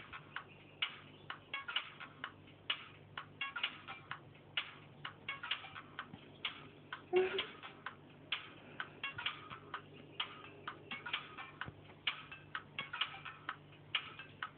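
Irregular light clicks and taps, about three a second, over a faint steady low hum.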